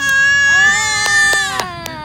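A toddler's long, loud, high-pitched squeal, held at nearly one pitch for close to two seconds and breaking off shortly before the end, with a few light clicks over it. The toddler is laughing, so it is a squeal of delight rather than crying.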